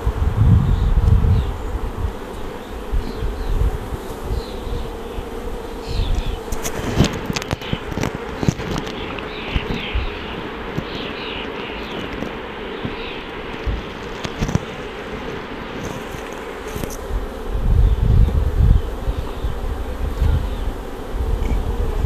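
Honeybees buzzing steadily around the open hives, a constant drone. Bouts of low rumble come near the start and again late on, with a few light clicks in between.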